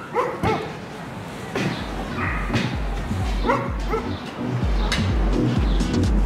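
A dog barking several times. From about two seconds in, music with a heavy bass beat pulsing about twice a second comes in under the barks.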